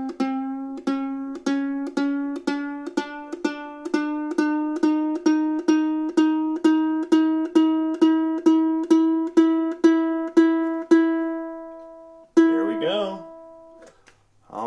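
A soprano ukulele's E string plucked over and over, a little more than twice a second, while its tuning peg is turned: the note slides slowly up from C toward E. Then the plucking stops and the note rings out and fades, and one last pluck near the end rings on, still slightly flat of E.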